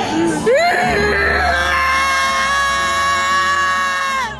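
A person's voice swooping up into a long, loud held high note, yelled or belted for about two and a half seconds, then sliding down as it ends, over a low steady rumble.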